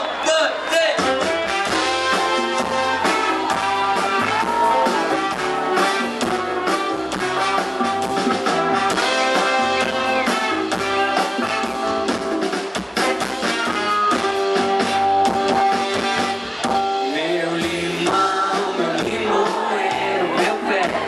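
Live band playing an instrumental passage: a trumpet and trombone horn section holding notes over drums, electric guitar and bass, with a steady beat.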